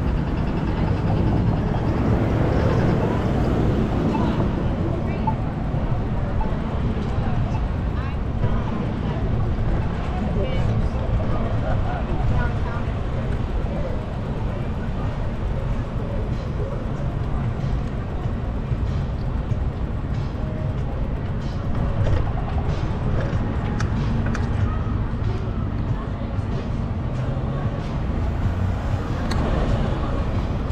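Steady low rumble of wind on the microphone and road noise from a bicycle ride along city streets, with car traffic passing and indistinct voices of people on the sidewalks.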